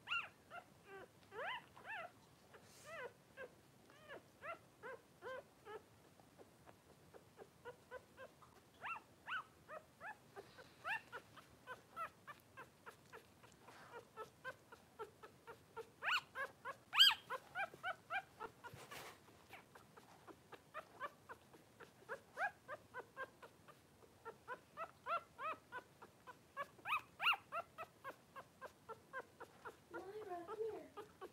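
Newborn Cavalier King Charles Spaniel puppies crying in a steady run of short, high squeals, about two a second, loudest a little past the middle.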